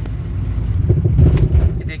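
A car driving along a street, heard from inside the cabin: a steady low rumble of engine and tyres that swells a little about a second in.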